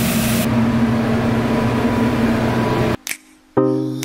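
Steady, loud rush with a low hum from a food-truck kitchen: the exhaust hood fan over a flat-top griddle. It cuts off about three seconds in, and a song comes in just before the end.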